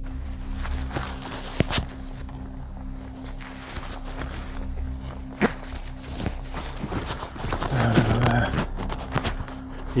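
Footsteps walking over rough ground in the dark, irregular steps with the odd knock of carried gear. A steady low drone runs underneath.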